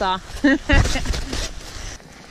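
A woman's voice in short spoken phrases, with a low rumble on the microphone about three quarters of a second in.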